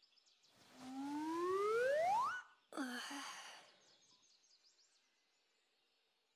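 A girl's long breathy sigh rising steadily in pitch, followed by a short breath, with faint bird chirps in the background.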